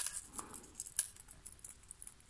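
Light metallic clicks of a steel split ring and snap swivel being worked with split-ring opener pliers: a few sharp ticks, the clearest one about a second in.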